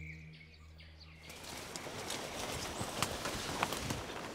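A soft music pad fades out about a second in. Then comes wet rainforest ambience: an even hiss with scattered small clicks and rustles, and faint bird chirps.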